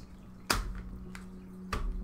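Foil-wrapped trading-card packs handled on a stainless-steel digital pocket scale: a sharp tap about half a second in as a pack meets the metal platform, then fainter taps near the end, over a faint steady hum.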